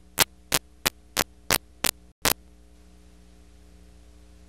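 Videotape playback noise at an edit point: seven short, loud crackles of static about a third of a second apart, over a steady electrical hum. There is a brief dropout to dead silence just after two seconds in.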